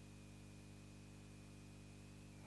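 Near silence: room tone with a faint steady low hum and a faint steady high tone.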